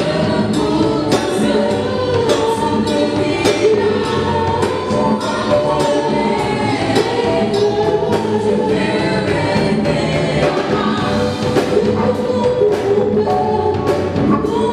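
Live gospel worship song: a small group of singers in harmony over keyboard and a drum kit keeping a steady beat.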